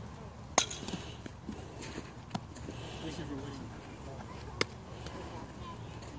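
Three sharp knocks of a softball striking a bat or glove during infield practice, about half a second, two and a half seconds and four and a half seconds in; the first is much the loudest.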